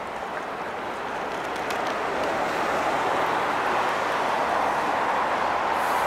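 Steady city street traffic noise, a continuous rush that grows a little louder about two seconds in.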